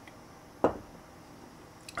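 A glass of beer set down on a wooden tabletop: one short knock about two-thirds of a second in.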